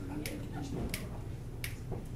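Finger snaps counting off the tempo before the band comes in: three crisp snaps evenly spaced about 0.7 seconds apart, over a low room murmur.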